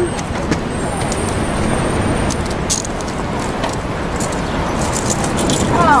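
Street ambience: a steady wash of traffic noise, with a few light clicks about halfway through and near the end.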